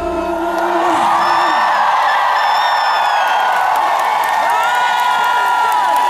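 Concert crowd cheering and screaming with many high whoops as a rock song ends; the band's last held note dies away in the first second or so.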